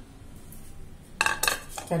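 Dishes clinking: two sharp, ringing knocks of a plate and cutlery about a second and a quarter in, typical of a plate being set down or handled.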